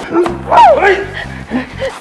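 An elderly woman crying out in short, falling yelps of distress as she is shoved to the ground, over background music with a steady pulsing bass.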